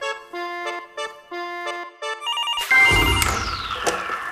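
A soft keyboard melody, then about two and a half seconds in an electronic desk telephone starts trilling in short high beeps. A low thump and a falling swoosh come in at the same time.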